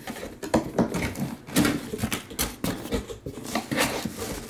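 Cardboard and plastic packaging being handled as a boxed item is unpacked: an irregular run of clicks, knocks and rustles, busiest in the middle.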